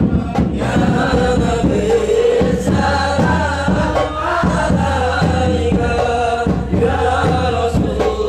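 A group of men chanting devotional dhikr together in unison, over a steady rhythmic beat.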